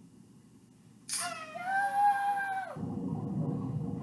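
A cat meowing once, a drawn-out call of about a second and a half that starts suddenly with a brief hiss and falls away at the end, played from a meme video through a TV's speaker. A steady low rumble follows as the video moves on to the next clip.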